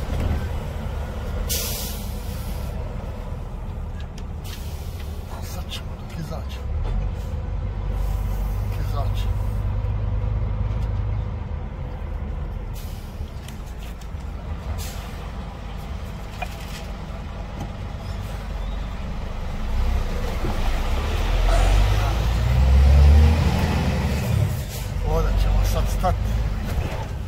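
A truck's diesel engine runs as a low rumble heard from inside the cab while the truck rolls along. The engine swells twice as the truck pulls away and is loudest a few seconds before the end. A short hiss of air comes about a second and a half in.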